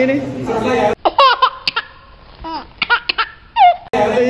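A short man's word, then about a second in a sharp cut to an edited-in clip of high-pitched giggling laughter in several short bouts.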